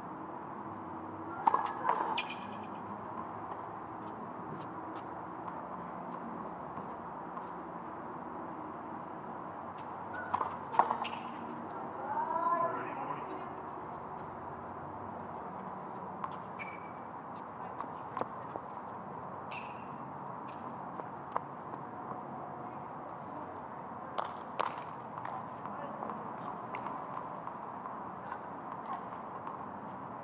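Tennis ball struck by rackets and bouncing on a hard court, the loudest hits about a second and a half in and around eleven seconds in, followed by a player's short shout. Lighter scattered ball ticks follow over a steady background hum of the court.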